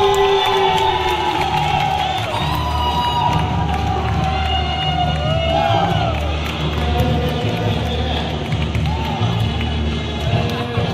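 A crowd cheering and shouting over music with a steady low beat.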